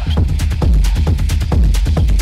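Techno playing in a DJ mix: a steady kick drum about twice a second over deep bass, with quick hi-hat ticks running between the kicks.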